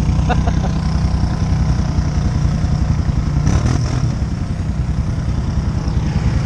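ATV engine running steadily at low revs, a constant rumble. There is a brief noisier rattle about three and a half seconds in.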